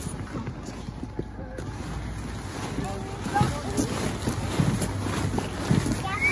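Wind buffeting the microphone in a low rumble, with faint voices about halfway through.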